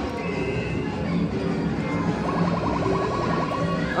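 Electronic arcade-machine music over the steady din of a busy arcade, with a rapid, evenly pulsing electronic tune starting about two seconds in.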